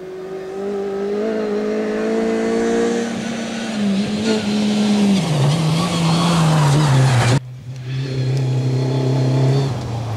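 Rally car engine at high revs on a gravel road as the car approaches, growing louder with rising tyre and gravel noise, and the note dropping in steps at gear changes around the middle. About seven seconds in, the sound cuts off abruptly and another rally car's engine is heard approaching, its note held steady.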